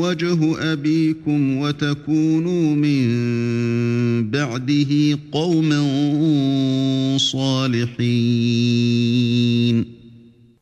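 A man chanting Quran recitation in Arabic: a melodic tajweed delivery with long held notes and flowing ornamented pitch steps. The chant stops shortly before the end.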